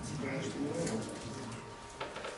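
Low, indistinct voices talking in a room, away from the microphone.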